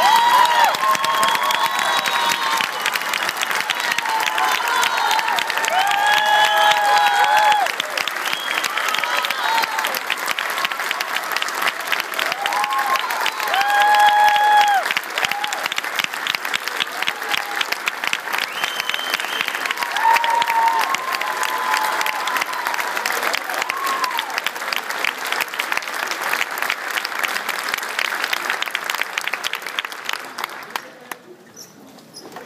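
Audience applauding in a school auditorium, a dense steady clapping with scattered shouted calls and whoops over it; the clapping thins out near the end.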